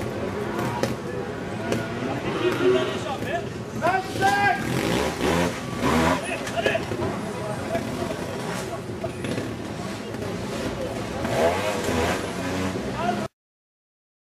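Trials motorcycle engine running and revving in bursts on a rocky climb, mixed with voices and shouts of people close by. The sound stops abruptly shortly before the end.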